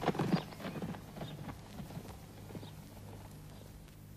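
A run of short, light knocks, a few a second, fading away over about three seconds, over a faint steady low hum.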